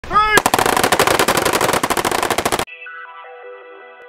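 Several belt-fed machine guns firing together in one long, rapid fully automatic string that cuts off abruptly about two and a half seconds in. It is preceded by a brief rising tone and followed by quiet intro music made of stepping bell-like notes.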